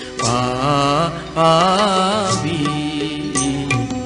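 A song: a voice singing two long phrases of wavering, held notes over steady instrumental accompaniment.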